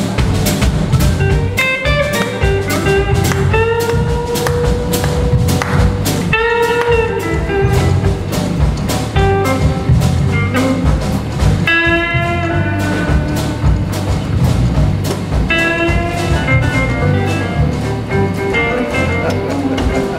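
Live blues-funk band playing: electric guitar, bass guitar, drum kit and keyboards over a steady beat, with a melody line of bent notes and quick runs on top.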